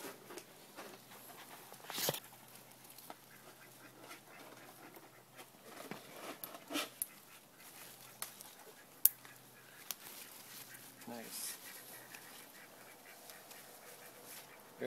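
Quiet rustling of tomato foliage and hand handling, with scattered light clicks, the sharpest about nine seconds in, and a few short murmurs.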